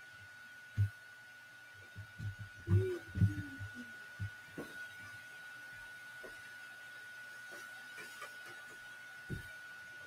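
Soft knocks and thumps from cardstock and a clip-lid plastic box of powder being handled on a craft mat: one about a second in, a cluster around the third and fourth seconds, and one near the end. A faint steady high whine runs underneath.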